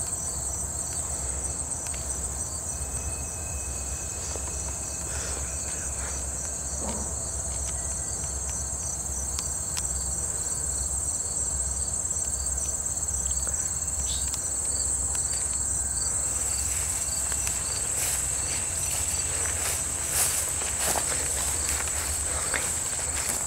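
Insects in summer grass making a steady, high-pitched drone, with a low rumble of wind or handling on the microphone. From about two-thirds of the way through, footsteps rustle through long grass, with a few sharp clicks near the end.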